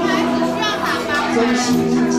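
Karaoke backing track playing with steady held chords, and voices over it.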